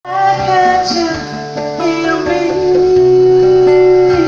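A woman sings a soul melody over plucked string accompaniment, holding one long note from about two seconds in.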